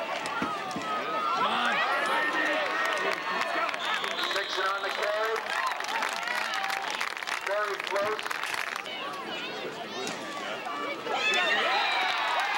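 Football spectators shouting and cheering, many voices at once. The noise eases off a little before the end, then swells again.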